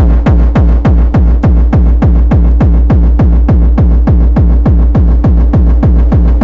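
Hardcore techno with a heavy, distorted kick drum falling in pitch on every beat, fast and even at about three to four kicks a second.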